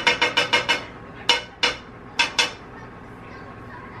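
A stirring utensil clicking against the side of a saucepan as a thick sauce is stirred, fast at first, about eight clicks a second, then a few single taps before it goes quiet.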